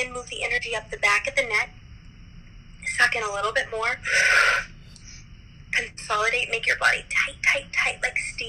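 A woman speaking over a video call, with a short, loud breathy hiss about four seconds in.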